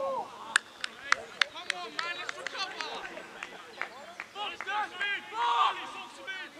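Voices shouting across a football pitch, several high-pitched calls in the second half. Earlier comes a quick run of sharp, evenly spaced clicks, about three a second.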